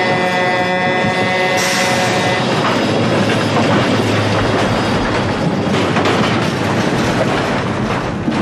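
A road train's air horn blares as the truck smashes into a light aircraft, and about a second and a half in comes a crash of tearing, crumpling metal. The horn stops soon after, and the heavy trailers rumble and rattle on past through the wreckage.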